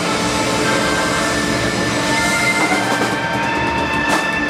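A live rock band's loud, sustained drone of distorted electric guitar and amplifier noise holding several long steady tones, with new tones coming in partway through.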